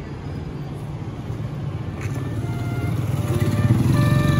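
Low street-traffic rumble from motor vehicles, growing louder, with background music fading in about halfway through.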